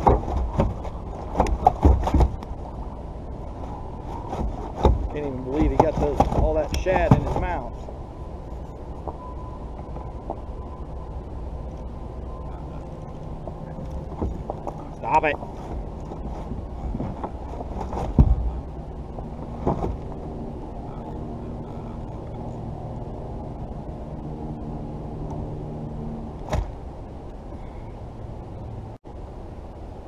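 Handling noises of fishing gear in a kayak: scattered knocks and clicks of rod, reel and hull as a fish is reeled in and unhooked, over steady low background noise.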